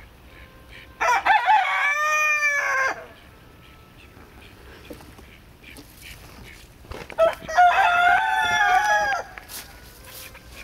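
A rooster crowing twice, each crow about two seconds long, the second coming about six seconds after the first.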